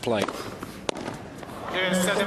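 Tennis match broadcast sound: a man's commentary voice, and about a second in a single sharp crack of a racket striking the ball. More voices come in near the end.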